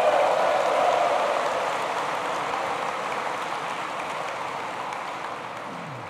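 Large audience applauding, loudest in the first second and gradually dying down.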